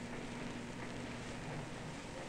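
Steady background hiss with a constant low hum: the noise floor of an old 16mm film's optical soundtrack, with no distinct sound event.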